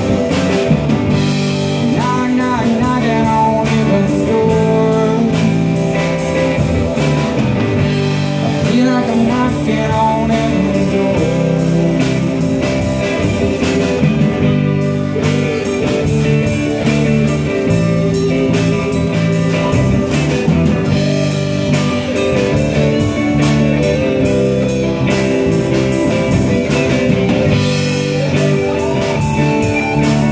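A live rock band playing a slow song on electric guitars, bass guitar and drum kit, with a melody line that bends up and down in pitch over the top.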